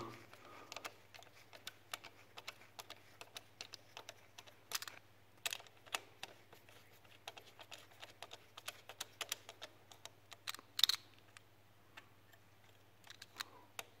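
Faint, irregular clicks and small metal taps of a hex screwdriver working the 5 mm Allen bolts of an exhaust flange protector on a motorcycle cylinder, a few a second, with a couple of louder clicks.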